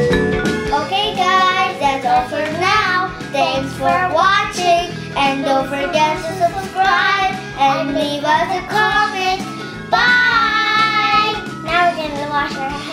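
Young girls singing in phrases over a backing music track.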